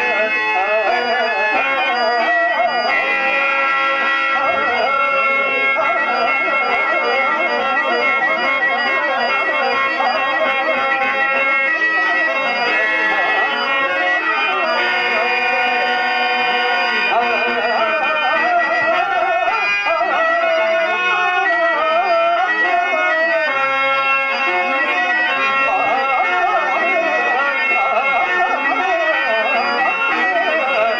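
Harmonium playing a continuous melody with held notes, while a man's voice sings a long, wavering, wordless raga line over it, as in a Telugu stage padyam.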